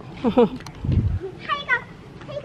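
A toddler's high-pitched wordless vocalising in short sing-song bursts, with a brief low rumble about a second in.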